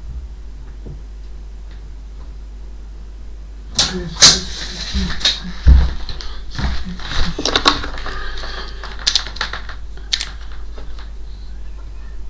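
Clatter of household items being handled and set down: a run of sharp knocks and clicks with rustling, starting about four seconds in and thinning out to a few light clicks after about ten seconds.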